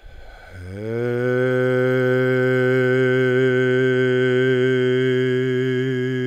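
A man's low voice intoning one long sustained note of a chant, sliding up in pitch over the first second and then held steady, a syllable of the name Yeshua sung as a meditation.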